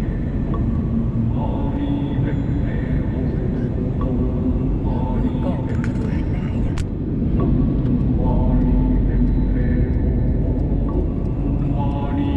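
Steady road and engine rumble inside a car cruising at expressway speed, with people talking over it at intervals.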